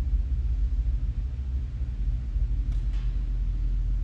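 Steady low rumble and hum of room background noise, with two faint soft clicks about three seconds in.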